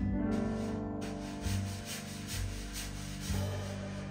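Acoustic jazz-folk band playing the closing bars of a song: a ringing acoustic guitar chord, a few low double bass notes, and a steady swishing from the drum kit at about four strokes a second, gradually softening toward the end.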